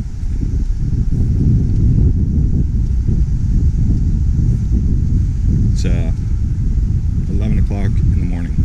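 Wind buffeting the camera microphone, a steady low rumble throughout. Brief snatches of a voice come through about six seconds in and again near the end.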